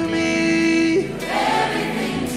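Gospel choir singing, holding one note for about a second before moving into the next phrase.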